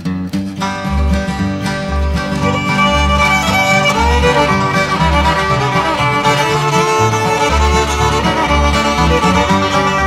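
Old-time string band playing: fiddle carrying the tune over strummed guitar, with steady bass notes on the beat.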